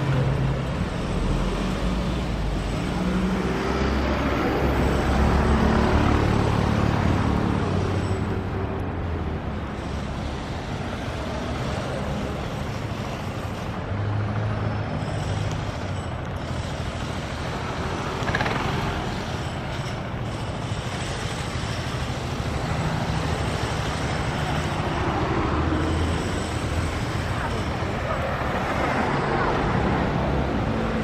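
Road traffic on a city street: cars and motor scooters driving past, a continuous engine and tyre rumble that swells and fades as vehicles go by.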